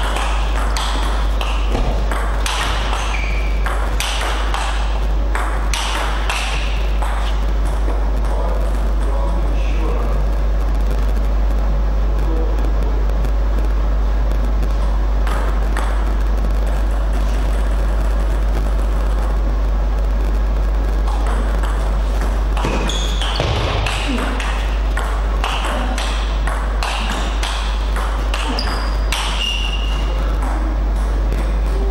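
Table tennis rallies: the ball clicking back and forth off the paddles and table in quick exchanges, in two bursts with a lull between points. A steady low hum runs underneath.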